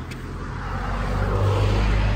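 A motor vehicle coming along the street, its engine and tyre noise growing steadily louder.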